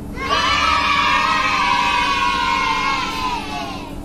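A group of children cheering and shouting together, a celebratory sound effect lasting about three and a half seconds and tailing off near the end.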